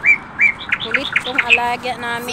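Small birds chirping: a few short, evenly repeated chirps, then a quick run of chirps about halfway through, followed by a longer, steadier call near the end.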